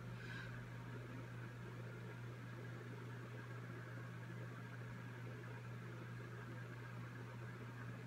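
Faint, steady room tone: a low hum with light hiss underneath, with no distinct sounds.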